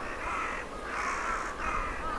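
A flock of crows cawing: harsh calls repeated about every half second, overlapping one another.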